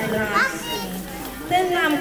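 Young children's voices chattering and calling out together, with high rising exclamations near the start and again near the end.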